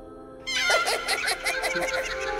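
Ghungroo ankle bells jingling in a quick run of rhythmic strokes, starting about half a second in, over background music.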